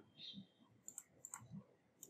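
A few faint computer mouse clicks, bunched about a second in, over near silence.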